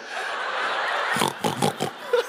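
Theatre audience laughing: a dense wash of laughter that breaks into shorter choppy bursts about a second in.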